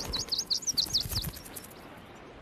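A bird chirping: a quick run of short, high chirps through the first second or so, which then dies away.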